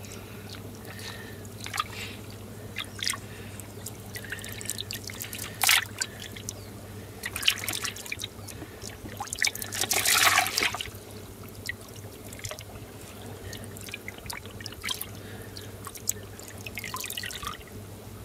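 Water splashing and dripping as a hand moves a goldfish about in shallow pond water: scattered small drips and splashes, with a longer, louder splash about ten seconds in. A steady low hum runs underneath.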